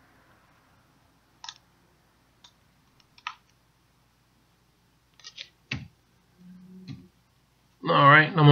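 Scattered computer mouse clicks and keyboard key presses, about seven short sharp clicks at irregular intervals. One click, a little before six seconds in, is a duller, louder knock. A faint brief low hum comes near the end.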